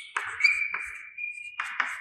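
Chalk writing on a blackboard: short scratchy strokes and taps, with a high squeak of the chalk held for about a second in the middle.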